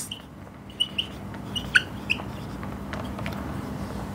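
Dry-erase marker writing on a whiteboard, several short high squeaks and scratches in the first half, one squeak sliding down in pitch, over a faint steady hum.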